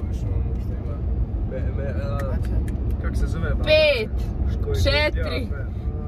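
Steady low road and engine rumble inside a moving car's cabin, with a few short bursts of voices over it.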